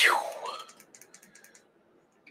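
A breathy "phew" exhale at the start, fading over about half a second, followed by a quick run of light clicks for about a second, like typing on a computer keyboard.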